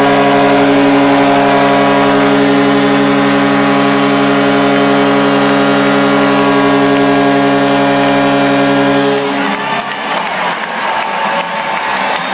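Hockey arena goal horn sounding one long, steady multi-tone blast over a cheering crowd, cutting off suddenly about nine seconds in; the crowd cheering and clapping carries on after it.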